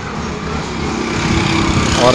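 Tractor diesel engine running steadily in the background, growing a little louder over the two seconds.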